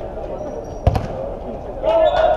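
A football kicked hard once, a sharp thud about a second in, on an indoor artificial-turf pitch.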